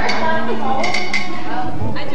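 Voices in a room, broken by several sharp clinks and clatters, a few of them close together about a second in.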